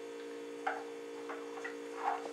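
Steady electrical hum with a few faint clicks, the clearest about two-thirds of a second in.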